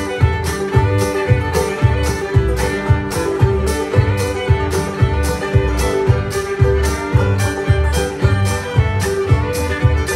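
String band playing live: fiddle lead over banjo and upright bass, with a steady low percussion thump about twice a second.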